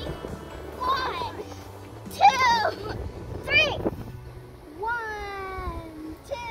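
Children's high-pitched wordless cries and squeals, rising and falling in pitch, with a long falling call near the end.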